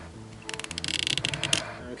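Nylon zip tie being pulled tight around a small RC receiver, a rapid run of ratchet clicks lasting about a second.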